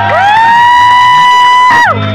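A loud, high-pitched cheering whoop from a person close by. It swoops up into one long held note and drops off sharply near the end.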